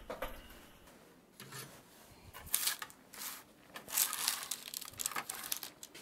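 Spatula sliding under baked cookies on a parchment-lined baking sheet, with soft, intermittent crinkling of the paper and light scrapes as the cookies are lifted off.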